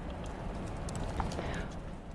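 Laptop keyboard keys tapped a few times, faint and irregular, over a low steady room hum.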